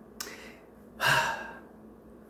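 A person sighing: a brief breath noise near the start, then a breathy exhale about a second in.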